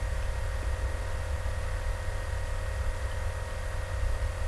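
Steady background hum: a low rumble with a few faint steady tones and an even hiss, with no distinct events.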